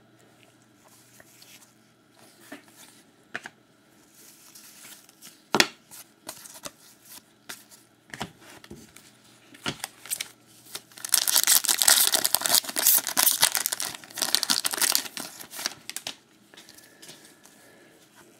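Trading cards being handled with scattered light clicks and taps. About eleven seconds in, a sealed card-pack wrapper is torn open and crinkled for several seconds.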